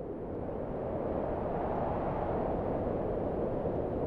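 A steady, low rushing rumble that fades in over about the first second and then holds.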